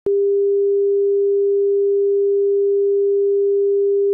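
A single steady electronic sine tone at one constant pitch, starting abruptly just after a brief silence and holding unchanged and loud.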